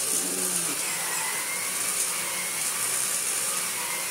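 Electrolux Automatic G canister vacuum cleaner running steadily with its electric power head being pushed over a rug: an even rushing sound with a high whine on top.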